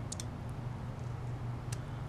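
A few faint clicks of a steel carving fork and knife against meat and a wooden cutting board, over a steady low background hum.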